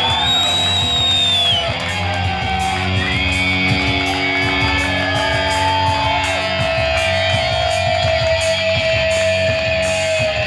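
Amplified electric guitar playing a live heavy metal solo, with bending notes early on and one long sustained note held through the second half, ending just before the close.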